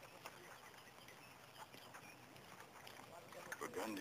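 Quiet background with faint, indistinct voices, much softer than the dialogue around it.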